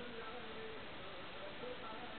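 Faint, indistinct voices over a steady hiss.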